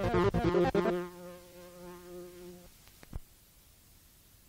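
Electronic trance (nitzhonot) music reaching its end: the driving beat stops about a second in, leaving a single held synth note that fades out by about two and a half seconds. Two quick blips follow near three seconds, then silence.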